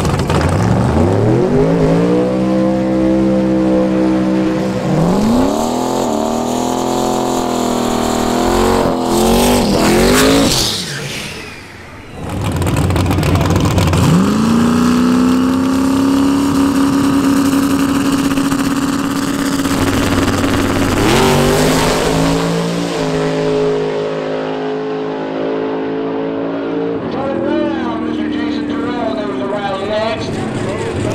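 Drag car engines at high revs: a car revving hard through a smoky burnout for about the first ten seconds, then after a brief lull, engines held at a steady high rev on the line for several seconds before launching and running away down the strip, fading near the end.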